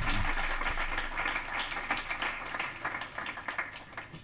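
Audience applauding: dense, steady clapping that thins out toward the end.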